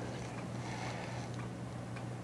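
Steady low hum with faint hiss, the background noise of an old recording, with no distinct sound event.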